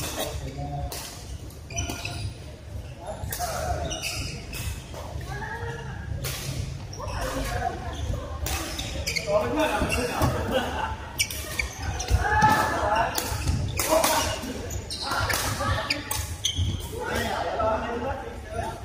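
Badminton rackets striking a shuttlecock during doubles rallies: sharp, irregular cracks that echo in a large hall, with voices of players in the background.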